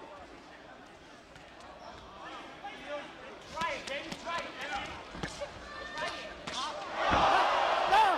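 Boxing match: shouting from ringside and sharp smacks of gloved punches landing, then about 7 seconds in a heavy thump as a boxer is knocked down, and the crowd noise surges loudly.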